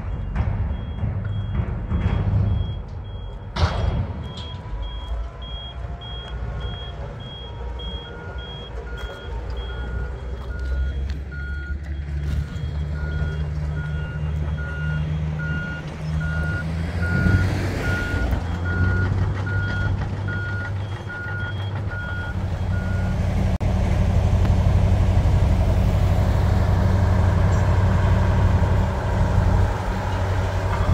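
Diesel earthmoving machines running at a construction site, with two reversing alarms beeping at different pitches: a higher one from the start, then a lower one joining, both stopping a little over twenty seconds in. The engine drone grows louder near the end.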